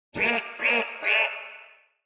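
A duck quacking three times, about half a second apart, the last quack trailing off.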